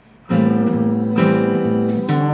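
Nylon-string Taylor 214ce-N acoustic guitar strumming chords: a chord is struck about a third of a second in and rings, and another is struck about a second in.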